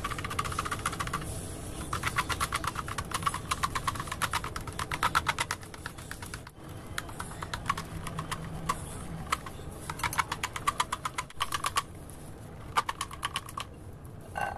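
A silicone whisk beating runny egg batter by hand in a glass bowl: quick runs of rapid clicking strokes against the glass, broken by short pauses. The batter is being beaten further once the ingredients are evenly mixed.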